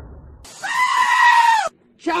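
A dull low noise, then a single loud, high-pitched scream held steady for about a second that dips at the end and cuts off abruptly.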